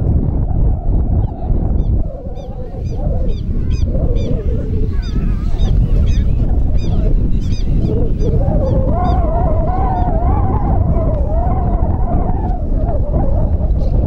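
Wind rumbling on the microphone. Over it, small high chirps repeat a few times a second in the first half, and a long wavering pitched sound runs from about eight seconds in.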